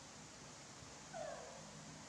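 A baby macaque gives one short squeaky call about a second in, dipping slightly in pitch, over faint room hiss.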